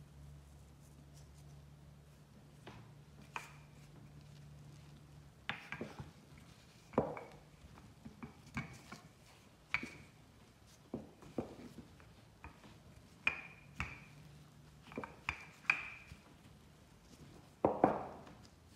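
Wooden rolling pin rolling out bread dough on a wooden board, with irregular knocks and taps as the pin meets the board, starting about five seconds in.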